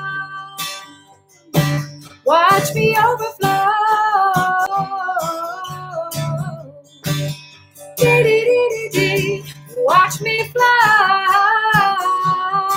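Strummed acoustic guitar with a woman singing a melody over it.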